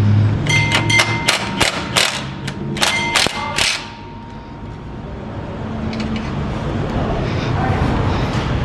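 Cordless impact wrench running against a seized exhaust flange bolt; the hum of the hammering stops about a second in. It is followed by a run of sharp, ringing metal clanks over the next few seconds.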